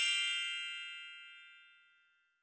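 A bright, many-toned chime ringing and fading away over nearly two seconds: a transition sound effect for an animated title card.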